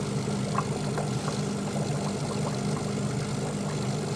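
Aquarium filter motor humming steadily, with a couple of faint ticks in the first second or so.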